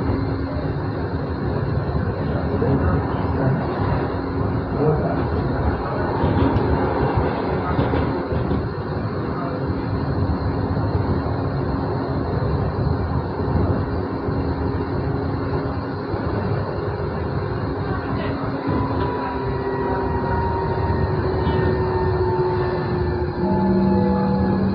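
Moderus Gamma LF 03 AC low-floor tram running along its track, heard from the driver's cab: a steady rumble of wheels on rail under a humming electric drive tone. From about two-thirds of the way through, the drive's tones shift into slowly gliding pitches.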